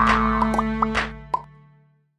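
Short closing jingle music with sound-effect blips: a rising glide at the start, then a few quick pitched pops over held chords, fading out to silence near the end.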